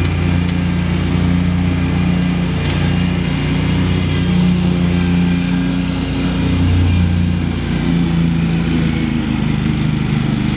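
Commercial stand-on lawn mower engines running steadily, with the engine note shifting a little now and then as one mower cuts through tall, wet grass.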